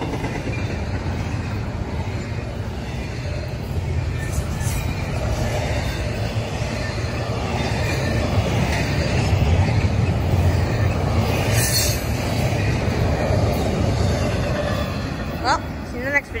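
Double-stack intermodal well cars rolling past at about 50 mph: a steady rumble of steel wheels on rail that builds toward the middle and eases near the end as the last cars go by.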